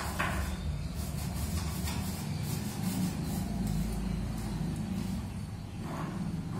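Steady low hum of an RO water plant's pump motor running, with a short hiss right at the start and a couple of fainter brief hisses after it.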